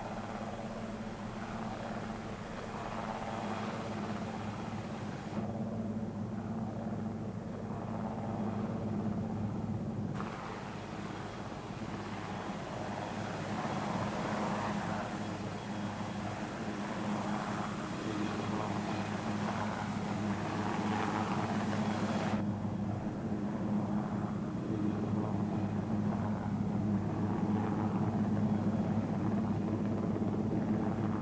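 Helicopter hovering: a steady rotor and engine drone with a constant low hum. The sound changes abruptly a few times.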